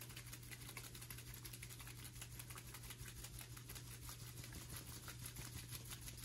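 A capped plastic conical tube of liquid being shaken by hand to mix a dilution, heard as a faint, fast, even run of ticks and sloshes.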